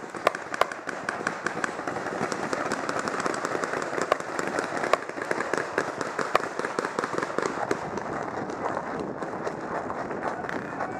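Scattered sharp pops of skirmish-game guns firing across the field, single shots and quick strings, the loudest a few near the start and around the middle, over a steady background noise.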